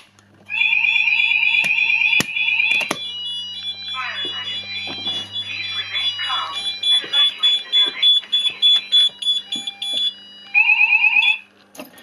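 Fire alarm sounding after a manual call point is operated. A Fulleon Fire Cryer voice sounder gives a fast-pulsing alert tone, then a recorded spoken message, then the alert tone again briefly, with a steady high intermittent sounder tone running underneath. The sounding cuts off near the end.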